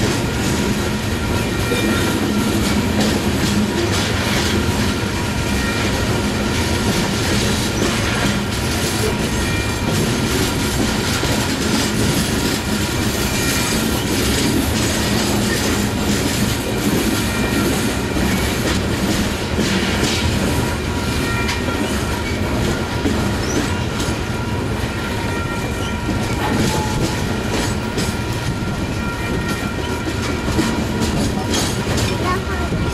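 Loaded or empty coal cars of a long freight train rolling steadily past at close range: a continuous rumble of steel wheels on rail with clickety-clack from the rail joints. A thin, steady, high squeal from the wheels runs over it.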